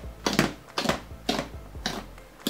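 Hands pressing and squeezing a large mass of fluffy slime made with shaving foam, giving short wet squishing sounds about twice a second.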